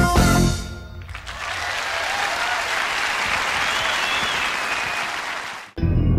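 A jazz-fusion band's closing notes stop about half a second in, followed by a concert audience applauding steadily. The applause cuts off abruptly near the end and the band's music starts up again, with guitar and bass.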